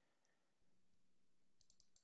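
Near silence, with a few very faint computer mouse clicks near the end.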